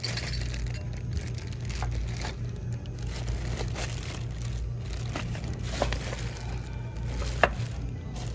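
Clear plastic bags crinkling as bagged ceramic figurines are picked up and handled, with scattered light clicks and one sharper click near the end, over a steady low hum.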